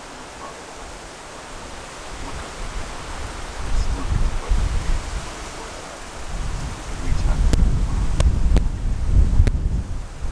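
Wind buffeting the microphone, in low gusts that grow stronger a few seconds in and strongest near the end, with a few sharp clicks late on.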